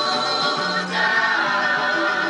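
A choir singing in harmony, holding long notes and moving to a new chord about a second in.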